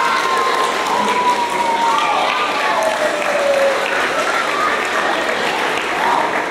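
Audience applauding and cheering, with long shouted cheers heard over the clapping.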